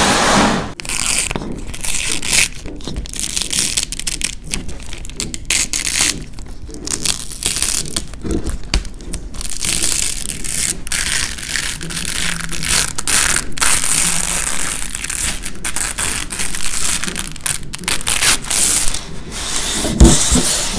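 Dried layers of paint crackling and crinkling as they are handled, rolled and peeled off a plastic sheet: an uneven run of rustles and small sharp pops.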